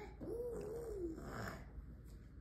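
A husky vocalizing: one low, wavering call about a second long that rises and then falls in pitch.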